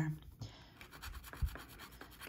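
Faint, quick scraping strokes of a plastic scratcher tool rubbing the coating off a scratch-off lottery ticket on a paper towel, with one soft low thump about one and a half seconds in.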